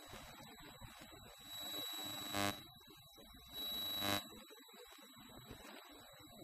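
An electronic buzzer sounds twice, each buzz steady and lasting about a second, the second a little shorter, over a low murmur of people moving about the room.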